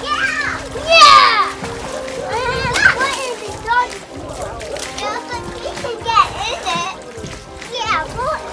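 Water splashing as two small children wade and kick in a plastic stock-tank pool, under their high excited voices and shrieks, with background music playing.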